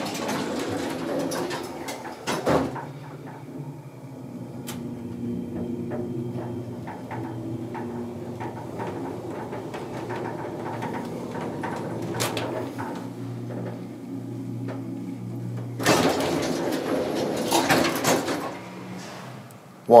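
Westinghouse hydraulic elevator in motion: a thump, then a steady hum from the machinery for about thirteen seconds while the car travels. Near the end the hum stops and the car doors slide open with a few seconds of rattling noise.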